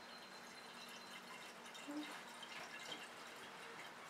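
Faint, steady trickle of green-coloured spirit (alcohol) poured in a thin stream from a steel jug into the neck of a glass flask holding water.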